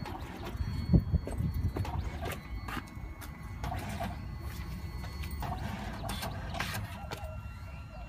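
A small photo printer hidden inside a wooden whiskey barrel, running and feeding a print out through a copper slot: a faint steady whine with scattered clicks and knocks, the loudest knock about a second in.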